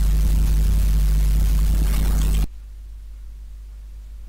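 Noise floor of a budget Trust Starzz electret microphone, recorded with the input level at 100% and played back: a steady low hum with hiss, cutting off suddenly about two and a half seconds in when playback stops.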